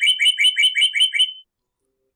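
A bird chirping in a rapid, even series of short two-note chirps, about six a second. The chirps stop about a second and a half in.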